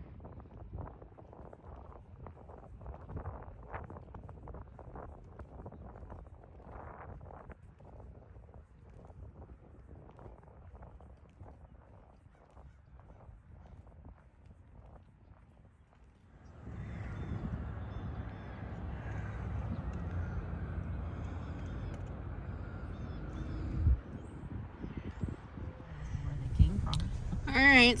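Faint footsteps on asphalt with the rustle of a handheld phone; about two thirds of the way through, a louder steady low rumble of a car running takes over, with one sharp thump near the end.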